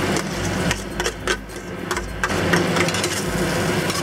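Minced green onions tipped from a metal bowl into a hot wok of chicken in sauce, with several sharp knocks as the bowl and utensil strike the wok. A faint sizzle from the still-hot sauce and a low steady hum run underneath.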